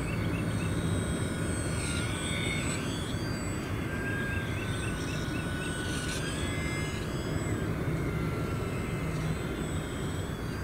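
Electric motor and propeller of a small RC plane, the E-flite UMX Turbo Timber Evolution on a 2S battery, whining as it flies by. Its pitch drifts slightly up and down with throttle and passes, over a steady low rumble.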